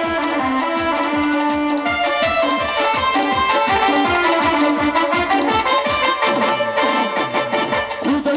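Instrumental dance music: a keyboard melody over a fast beat of tabla and drum pad, whose low strokes drop in pitch.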